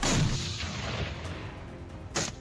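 A sudden heavy boom that fades away over about a second and a half.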